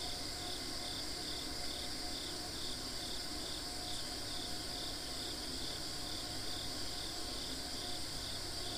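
A steady chorus of insects chirping outdoors: a continuous high buzz with a pulsing trill repeating about twice a second.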